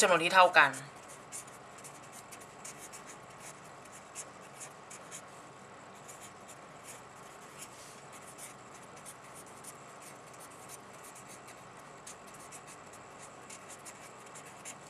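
Handwriting: a pen or marker scratching across a writing surface in many quick, short strokes, thinning out in the last couple of seconds.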